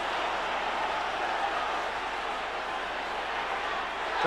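Football stadium crowd noise, heard steadily through an old television broadcast, easing off slightly toward the end.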